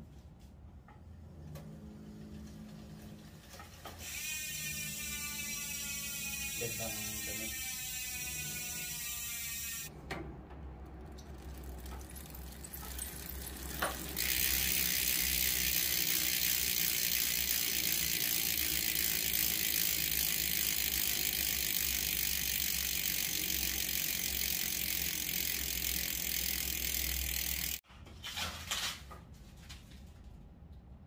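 Freehub of a mountain bike's stock rear wheel clicking as the wheel is spun and coasts, the clicks slowing as it winds down. Later a loud, steady buzz of the freehub pawls at speed, which stops suddenly shortly before the end.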